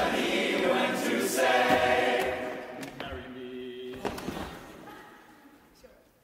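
Men's a cappella group singing in close harmony, then holding a few low notes that grow quieter and die away near the end.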